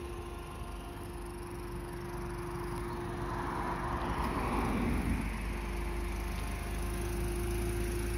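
Peugeot 207 CC idling with a steady hum. Around the middle, another car passes on the road, its noise swelling and fading.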